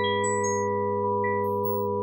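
Computer-generated pure sine tones tuned in 5-limit just intonation, sounding the steps of a tree-search algorithm. A steady low chord is held throughout, while short, high single notes come in and drop out above it one after another.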